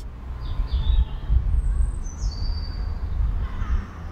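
Wild birds calling in woodland: a couple of short high whistled notes about half a second in, then longer high notes, one falling, in the middle, over a steady low rumble.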